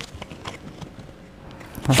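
A few faint taps and rustles of a card deck being handled over a tabletop, the most distinct tap right at the start. A woman's voice starts speaking at the very end.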